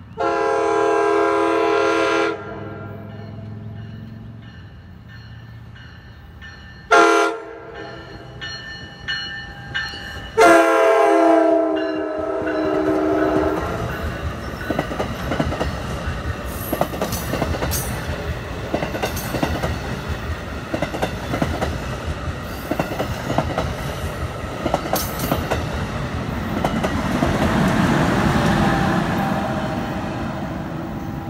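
NJ Transit commuter train sounding its multi-note horn three times as it approaches: a long blast, a short one about seven seconds in, and another long one about ten seconds in. The train then rolls past close by, wheels clicking and rumbling on the rails, growing louder near the end.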